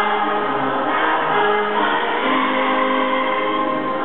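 A choral recording of a national anthem, sung by a choir with long held notes.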